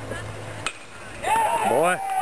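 A single sharp knock about two-thirds of a second in, then a loud, high-pitched voice yelling near the end, its pitch rising and falling.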